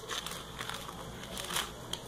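A large spoon working around under an orange's peel, the rind tearing away from the fruit with faint, irregular crackles and scrapes.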